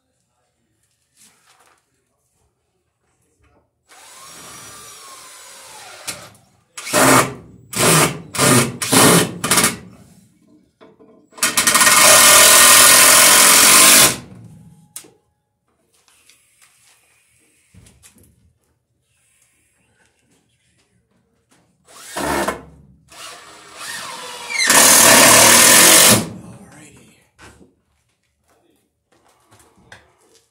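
Cordless drill driving screws into wood. It goes in a few short trigger bursts, then two long runs of a couple of seconds each, one about halfway and one near the end.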